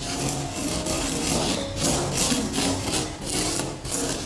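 Plastic spoon scraping and rubbing dry colored sand across sticker paper in repeated swishing strokes, spreading the sand over the sticky surface.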